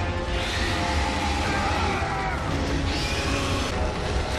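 Dramatic background score from an animated action scene, with held tones over a steady low rumble and crashing sound effects.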